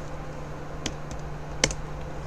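A few keystrokes on a computer keyboard, three short clicks with the loudest about one and a half seconds in, as the 'clear' command is entered at a terminal prompt.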